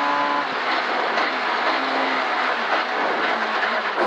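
Ford Escort Mk2 rally car at speed, heard from inside the cabin. A steady, high engine note cuts off about half a second in as the driver lifts. Lower engine notes then step down in pitch under loud road and tyre noise as the car slows for a left-hand corner.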